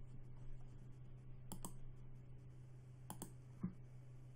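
A few faint computer mouse clicks over a low steady hum: a click about one and a half seconds in, then a quick pair and one more a little later.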